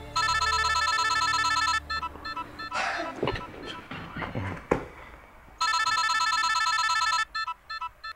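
Mobile phone ringtone: a rapidly pulsing electronic tune, two rings of under two seconds each, the second starting about five and a half seconds in, each ending in a few short beeps. It is an incoming call that is about to be answered.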